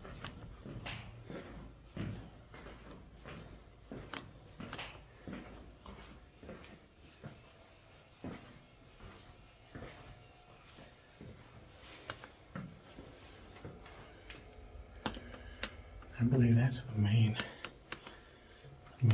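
Scattered, irregular light clicks and knocks of footsteps and handling on a ship's steel decks and fittings, in a small echoing space. A short burst of voice comes near the end.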